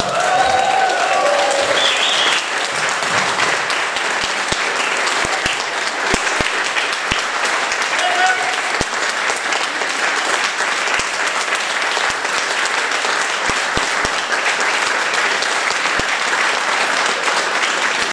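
Audience applauding steadily, with a brief voice calling out near the start and again about halfway through.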